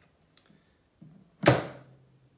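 Power Air Fryer Oven's front door being worked: a couple of faint clicks, then one sharp clack about one and a half seconds in with a short ringing decay. The door is loose and doesn't stay pushed up against its switches.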